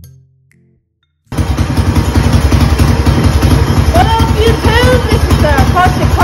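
Closing notes of music fade out. About a second in, a mini bike's modified Predator 212 single-cylinder four-stroke engine starts sounding suddenly, loud and steady with an even, rapid beat. From about halfway, high sweeping chirps sound over it.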